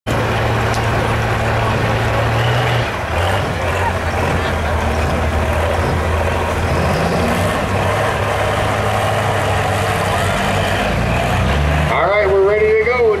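Kenworth semi tractor's diesel engine running at low revs, its pitch dropping a little about three seconds in and wavering after, under the chatter of a crowd.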